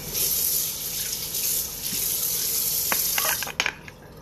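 Tap water running into a bathroom sink, a steady hiss that cuts off about three and a half seconds in, with a few light clicks near the end.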